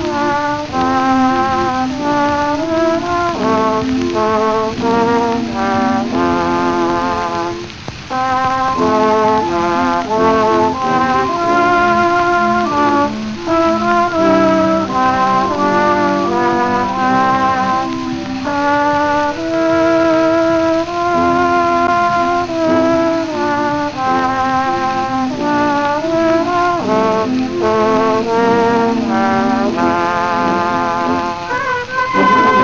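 Solo trombone playing a melody with vibrato over brass band accompaniment, on a 1901 acoustic recording with steady surface hiss and no high treble. There is a brief break in the notes about eight seconds in.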